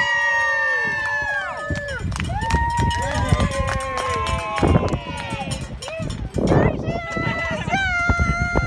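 Several children cheering and calling out in long, high-pitched held shouts that overlap, with no clear words.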